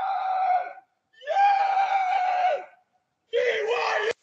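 A person yelling in long, held shouts at a steady pitch: one shout ends shortly after the start, a second lasts about a second and a half, and a third begins near the end, with short silences between.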